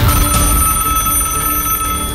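Old rotary-dial landline telephone ringing, one long ring of about two seconds, over background music.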